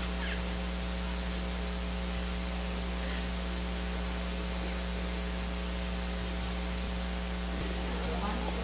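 Steady electrical hum with a constant hiss, a low drone carrying a stack of fainter higher tones, unchanging throughout.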